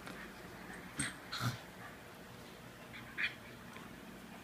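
Morkie and Schnauzer play-wrestling, with three short, sharp vocal sounds from the dogs: about a second in, again half a second later, and near three seconds.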